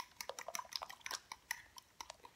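A utensil stirring thin icing-sugar-and-eggnog glaze in a glass bowl: a quick run of light, irregular clinks against the glass that thin out near the end.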